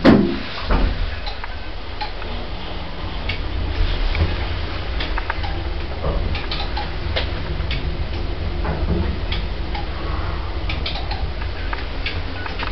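Modernised 1960s passenger lift descending: a steady low hum from the car and its machinery, with scattered light ticks and clicks from the car and shaft. There is a thump right at the start as the car sets off.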